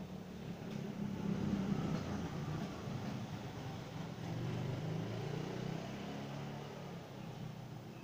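A low, steady engine rumble from a motor vehicle, swelling a little about a second in and again around five seconds.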